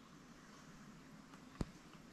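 Near silence: faint steady background hiss, broken by one short sharp click about a second and a half in.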